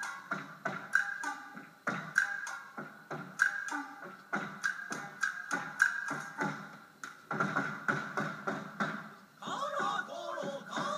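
Kabuki nagauta ensemble music: sharp shamisen plucks and hand-drum strikes in an uneven rhythm, with the singers' chanting coming in near the end. It is heard through a television's speakers.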